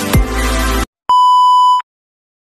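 Electronic music with falling bass sweeps cuts off abruptly, and after a short gap a single steady, high electronic beep sounds for under a second, a tone of the kind used as a censor bleep.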